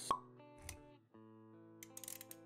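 Logo-animation sound effects over soft background music: a sharp pop right at the start, then a dull low thud a little over half a second later. Held musical notes come back in about a second in.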